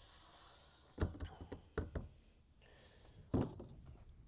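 A faint trickle of liquid from a plastic measuring cup into a tank opening, then a series of knocks and thunks as plastic chemical jugs and the cup are handled and set down on top of the tank: a cluster from about one to two seconds in, and one more near the end.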